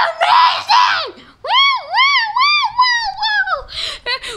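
A child's high-pitched voice: a loud shriek for about the first second, then a run of wordless high notes that swoop up and down about six times.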